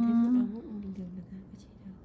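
A person's voice humming a drawn-out 'mm', loudest for the first half second, then trailing on more quietly for about another second.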